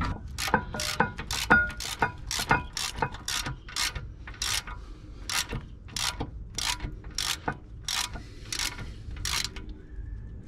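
A hand ratchet wrench with a socket running a 15 mm bolt into a brake caliper carrier. Its pawl clicks in quick bursts on each back-swing, about three strokes a second, and stops shortly before the end.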